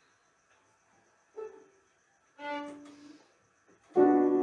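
Two short, quiet bowed violin notes with near silence around them: a brief higher one, then a lower one held for about half a second. Their pitches match the open A and D strings, as in a quick tuning check before playing.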